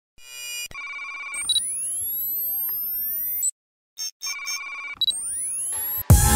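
Electronic intro sound effects: a warbling, ring-like tone, then a cluster of rising sweeps that climb very high and cut off suddenly about three and a half seconds in. After a short pause with a couple of quick blips, the warbling tone and rising sweeps come again.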